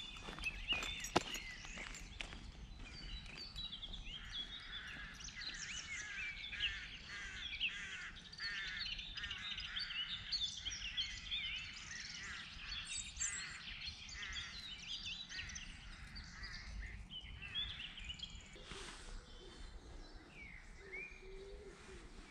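Several songbirds singing at once, a dense chorus of varied chirping phrases, with a lower call near the end. A single sharp click about a second in.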